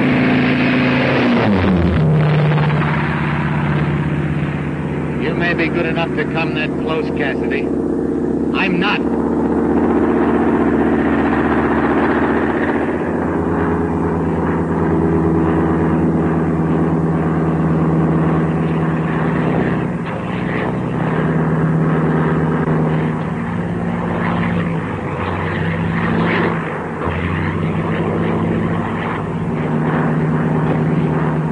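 Single-engine propeller aircraft running steadily in flight, its pitch dropping about a second in.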